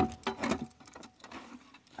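Small metallic clicks and rattles of a key working the barrel lock of a Hornady handgun lock box and the lid unlatching and opening. The clicks are busiest in the first half second, followed by a few faint ticks.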